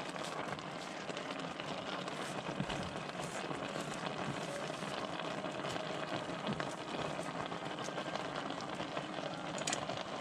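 A pot of coconut-milk broth simmering on the stove: a steady, crackly bubbling, with soft rustles as handfuls of malunggay (moringa) leaves are dropped in.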